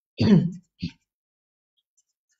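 A man's voice: one short spoken sound of about half a second near the start, a shorter one just before the one-second mark, then silence.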